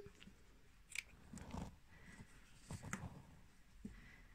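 Small scissors snipping through a strand of acrylic yarn with one faint sharp click about a second in, followed by soft handling of the yarn and crocheted piece.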